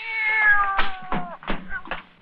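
A cat meowing: one long drawn-out meow, slowly falling in pitch, with a few short knocks partway through.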